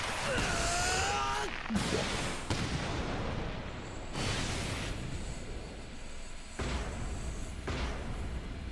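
Anime sound effects of a powerful volleyball serve, at a low level: a whoosh, then a series of booming impacts as the ball is struck and slams into the court floor.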